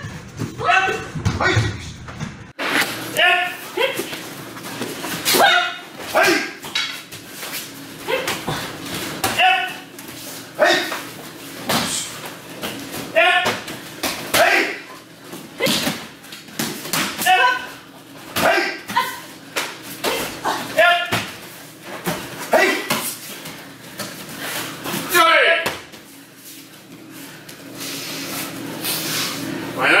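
Aikido freestyle throwing: short shouted bursts from the practitioners about once a second, mixed with thuds and slaps of bodies taking falls on tatami mats. The activity dies down in the last few seconds.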